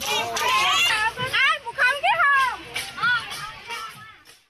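A group of women's high voices singing and calling out together, many voices overlapping and sliding up and down in pitch, as at a Bihu dance.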